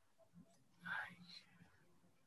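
Near silence on a video call, broken by a brief, faint voice about a second in, too soft to make out.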